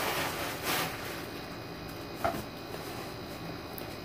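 Slime being stretched and folded by hand: a few soft, wet handling noises in the first second, then a faint steady hiss of room tone.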